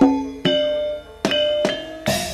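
Javanese gamelan music: struck bronze metallophone keys ringing out in a melody, with a short lull about a second in before the strikes resume.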